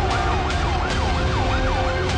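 Siren with a fast rising-and-falling wail, about two and a half sweeps a second, heard over background music with a steady beat.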